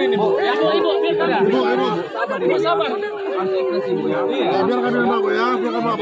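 A crowd of voices talking and calling out over one another, with one voice holding a long, steady wailing cry through much of it: the grief of the family as the body is brought in.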